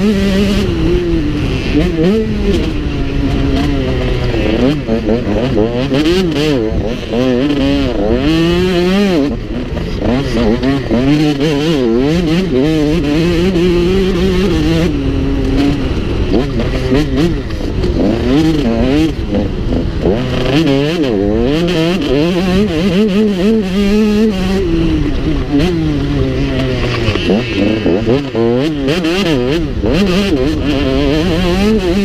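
Motocross bike engine ridden hard at race pace, its revs rising and falling every second or two as the throttle is opened and shut along the track.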